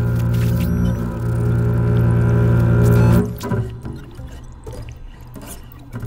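Contemporary music for double bass and electronics: a loud, sustained low drone on one steady pitch that cuts off suddenly about three seconds in, leaving quieter, scattered sounds.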